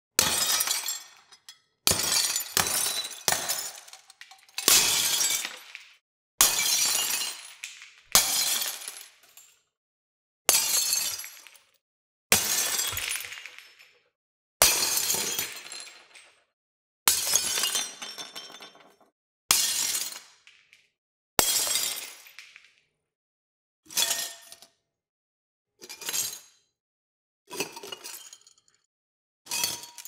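Glass laboratory beakers shattering one after another, about fifteen crashes a second or two apart, each a sharp break followed by the tinkle of falling shards. The later crashes are shorter and quieter.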